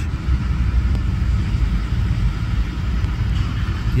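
Motor vehicle engine running with a steady low rumble.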